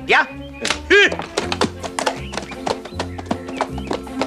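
Background music with a steady bass line, over which a horse's hooves clop on the road in a regular rhythm as a carriage drives off.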